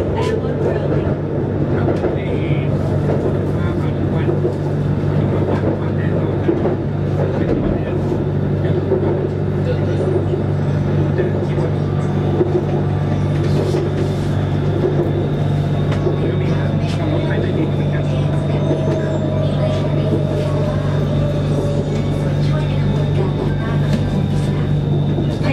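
BTS Skytrain car running along the elevated track, heard from inside the cabin: a steady low hum and rumble, with a faint motor whine easing down in pitch in the second half.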